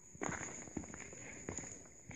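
Footsteps on loose rock rubble and gravel, about four steps roughly two a second, each a sharp scuff. A steady high-pitched whine sits underneath them.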